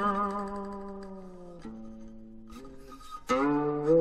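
Music on a plucked string instrument: a note rings and slowly fades, a couple of softer notes follow, then a loud new pluck comes a little before the end.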